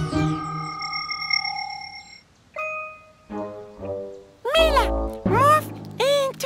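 Cartoon soundtrack of music and sound effects: held chime-like tones at first, then short notes, and about four and a half seconds in a loud burst of bending, voice-like tones over a deep thump.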